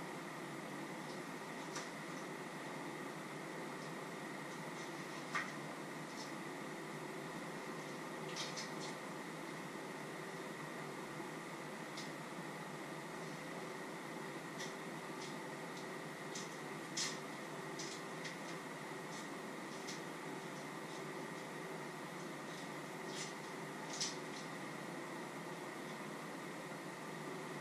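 Scattered light clicks and taps of utensils and containers being handled at a kitchen counter during food preparation, spaced irregularly over a steady background hiss with a faint hum.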